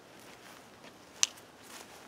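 Footsteps through grass, with one sharp click about a second and a quarter in.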